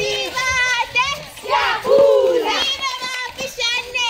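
A group of children shouting and calling out together in high voices, several at once, with footsteps on brick paving as they run.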